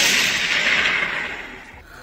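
A blast sound effect: a sudden loud burst of noise that fades away over about a second and a half.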